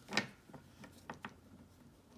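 A soft knock just after the start, then a few faint light taps over low room noise.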